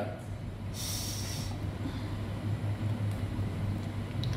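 A short breathy snort of laughter through the nose about a second in, over a steady low hum.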